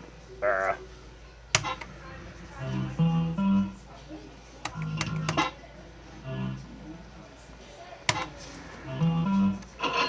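A fruit machine's short electronic jingles and stepped bleeps over arcade music, with several sharp clicks as its reels are played.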